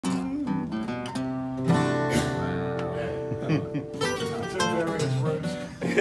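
Several acoustic guitars playing together: picked notes and a struck chord that rings out about two seconds in, then more picked phrases.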